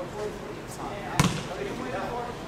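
A basketball striking a hard surface once with a sharp smack about a second in, over low talking voices.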